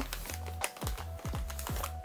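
Background music with a scatter of light taps, thuds and rustles as a gift-wrapped package is handled and its satin ribbon bow pulled loose.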